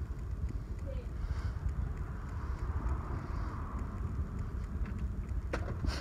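Steady low outdoor rumble with a faint even hiss, and a single sharp click near the end.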